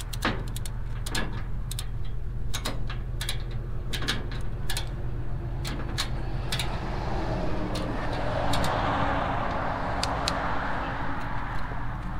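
Irregular metallic clicks and rattles of a ratchet strap and its hook being worked to tie a car down on a steel trailer, over the steady low hum of an idling vehicle engine. A rushing hiss swells up past the middle and fades near the end.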